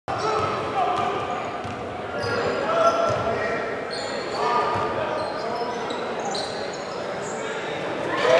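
Basketball game sound in a large gym: a basketball being dribbled, sneakers squeaking on the hardwood court with short high squeaks scattered through, and voices of players and spectators calling out, all with hall echo.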